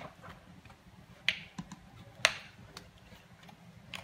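Two sharp plastic clicks about a second apart, with a few fainter ticks, as a plastic honey bottle's cap is snapped open for squeezing honey.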